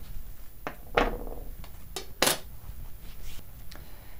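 Tailoring tools being handled on a worktable: a few separate light knocks and clicks, the sharpest about two seconds in.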